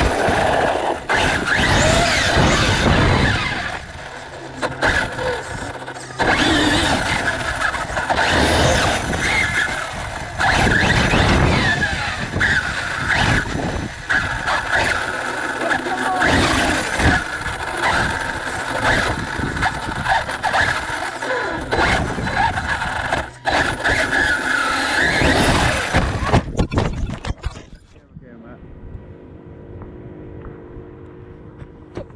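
Onboard sound of an Arrma Fireteam 6S RC truck driving hard: the whine of its 2050Kv brushless motor rises and falls through repeated bursts of throttle, over drivetrain and tyre noise. It cuts off abruptly near the end.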